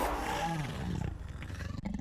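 Sound effect from an animated logo intro: a rough, growling roar with a few swells in pitch, fading somewhat over the two seconds.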